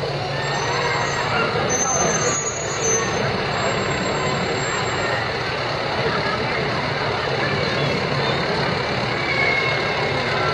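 Aerial ladder fire truck rolling slowly past with its engine running steadily, over the chatter of a crowd.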